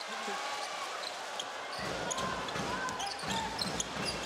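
Basketball game sound on court: a steady crowd hum, a ball being dribbled and short sneaker squeaks on the hardwood. A low rumble comes in about two seconds in.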